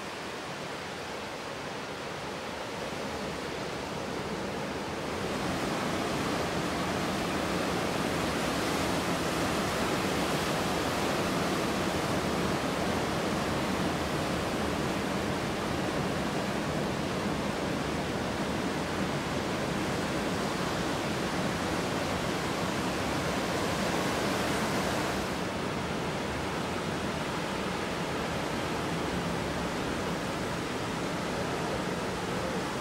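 Ocean surf breaking: a steady rushing wash of noise that swells louder about five seconds in and eases a little near the end.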